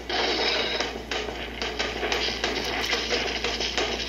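Cartoon soundtrack: music under a dense, irregular clicking rattle, a suspense sound effect.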